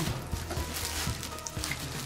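Black plastic wrapping rustling and crinkling as it is pulled and cut open with scissors, over quiet background music with a steady low drone.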